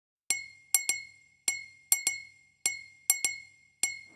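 A glass bottle struck in a rhythmic pattern as the song's percussion intro: about ten sharp, ringing clinks, a single strike followed by a quick pair, repeating.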